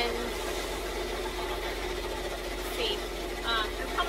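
Brother multi-needle embroidery machines running steadily, a continuous mechanical hum with a faint constant tone.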